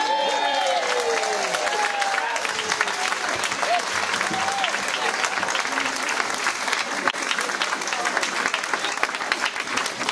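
Audience applauding and cheering as a live song ends, with shouts rising out of the clapping in the first few seconds.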